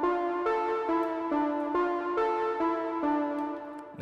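Native Instruments Ignition Keys software instrument playing its Space Keys layer alone: a recorded D minor keyboard pattern plays back as layered synth-keys chords, with the notes changing about twice a second.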